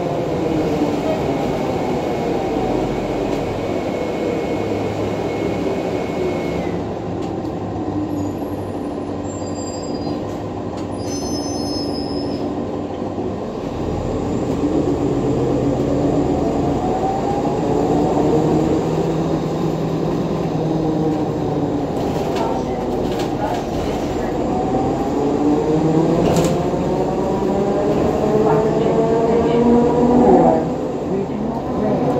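Cabin sound of a NovaBus LFS hybrid bus underway: its Cummins ISL9 diesel drones under the gliding whine of the Allison EP40 hybrid drive, with road rumble. The whine falls in pitch at first as the bus slows, then rises about halfway through and again near the end as it picks up speed.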